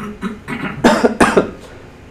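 A man coughing: two loud coughs in quick succession about a second in.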